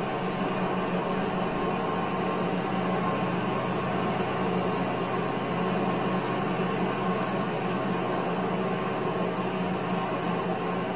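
Steady drone of a driving simulator's simulated car engine and road noise, played through speakers into a small room, as the car is driven at an even speed.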